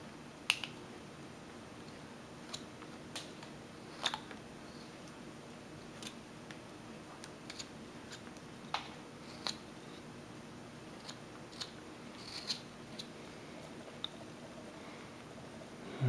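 Carving knife cutting into a small wooden figure: scattered short, sharp clicks and snaps as the blade slices and chips break free, a second or a few seconds apart.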